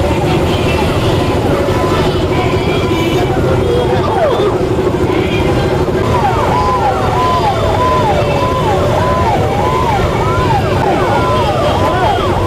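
Many motorcycle engines running together. About halfway in, sirens join: one yelping in quick rising-and-falling cycles about twice a second, another wailing slowly down and up.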